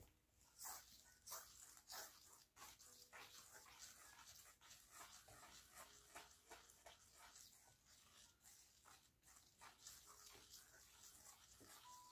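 Faint, rhythmic swishing of fingers sweeping across fine sand on a metal plate, about two strokes a second, as the sand is smoothed.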